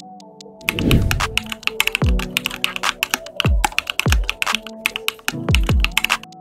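Computer keyboard typing sound effect, a quick run of key clicks, laid over background music with deep bass-drum hits and sustained tones. The clicks begin a little under a second in.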